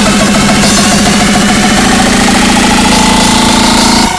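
Loud electronic music: a fast, buzzing synth bass line that settles into a held drone about two seconds in, with a tone rising in pitch over the last second or so, then breaking off sharply at the end.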